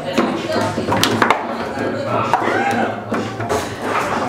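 Table-football ball being struck by the rod-mounted players and knocking against the table: sharp hard knocks, a quick cluster of them about a second in.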